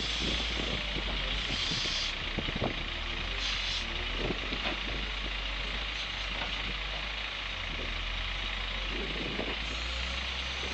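Diesel engine of a wheel loader running steadily under load as it tips a bucketload of material into a tipper truck's steel body, with scattered knocks and clatter from the falling material.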